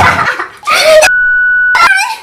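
A loud falling shriek from a woman, then a bright electronic beep sound effect held steady for under a second, starting and stopping sharply.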